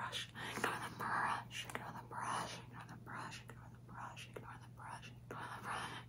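A woman whispering softly in short phrases, over a faint steady hum.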